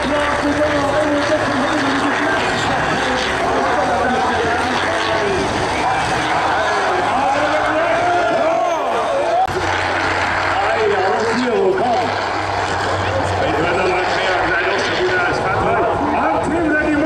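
Diesel engines of racing combine harvesters running hard under load, with a loudspeaker announcer talking over them without a break.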